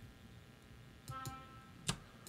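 A short sampled oboe note, about middle C, sounding for about half a second as it plays back on being drawn into the MIDI editor. A few soft mouse clicks, with a sharper click near the end.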